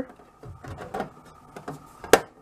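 Thin sheet-metal top cover of a car radio being slid and pressed onto its metal chassis: faint scraping with a few light clicks.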